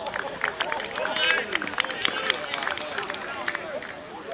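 Footballers' voices shouting and calling to each other on the pitch, with many short sharp knocks and clicks scattered through.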